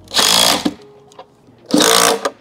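Makita 18-volt cordless impact driver run in two short bursts of about half a second each, tightening a serrated nut onto a through-bolt.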